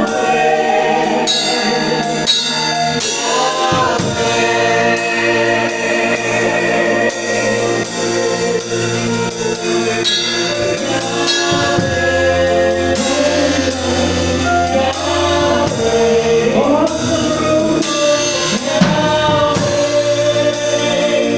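Live gospel worship singing by a man and two women on microphones, backed by a drum kit with a steady beat and a keyboard.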